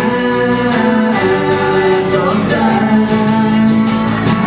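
Live acoustic folk music: strummed acoustic guitars with men singing into microphones.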